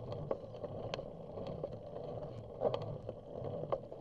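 Bicycle rolling along a paved path: a steady rumble of tyres and wind, with scattered sharp clicks and rattles from the bike over the pavement, the loudest about a second in, and again near the three-quarter mark and the end.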